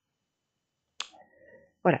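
Silence, then a single sharp click about a second in, followed by faint low noise, before a spoken 'voilà' near the end.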